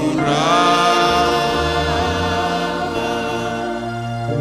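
A church worship group singing a slow song together on long held notes; a new line starts at the outset and is held for nearly four seconds.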